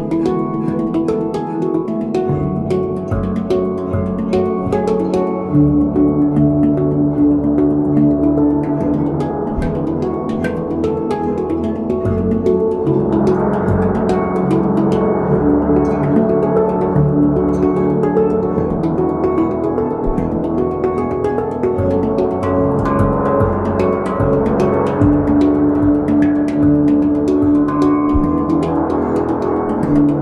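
Cristal Baschet and Ayasa handpan playing a duet. The Cristal Baschet's glass rods, stroked with fingers, give long held glassy tones, over a stream of struck, ringing handpan notes.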